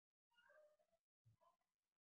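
Near silence: room tone between words.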